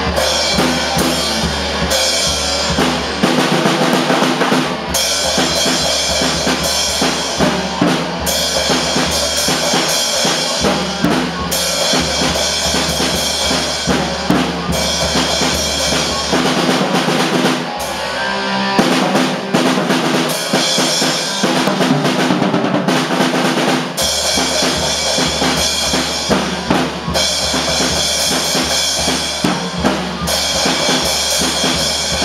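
A rock band playing a song: a full drum kit with kick drum and snare beating steadily under an electric guitar. A little past the middle the deep bass drops out for several seconds, then comes back in.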